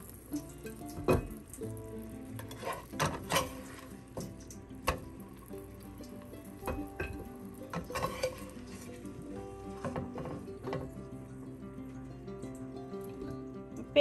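A plastic slotted spatula knocks and scrapes against a nonstick frying pan several times at irregular moments while fried chicken drumsticks are lifted out, over oil sizzling faintly in the pan. Soft background music plays throughout.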